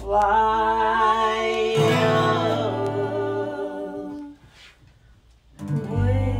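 Live Americana duet: strummed acoustic guitar chords with singing over them, the sung notes wavering above the ringing strings. The music dies away about four seconds in and a new chord starts just before the end.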